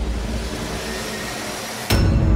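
Sound-effect intro of a wrestling entrance theme: a dense wash of noise with a deep low end slowly fades out, then a sharp hit just before the end as the music starts.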